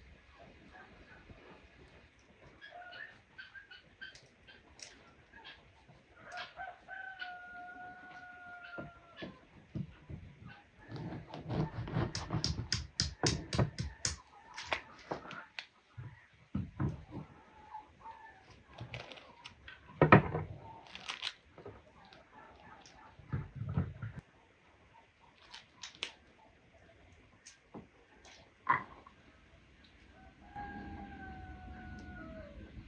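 A rooster crows in the background, one long call falling slightly in pitch about six seconds in. Close handling sounds of a pomegranate being cut with a knife on a wooden board and broken open: a run of rapid crackles and rustles, then a sharp knock about twenty seconds in and another near the end.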